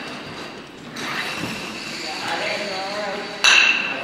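A sharp, loud clack with a brief ringing about three and a half seconds in: a cue-pushed game disc striking another disc on a wooden hall floor. Quiet voices murmur before it.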